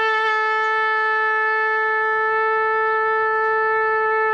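Ram's horn shofar blown in one long, steady note.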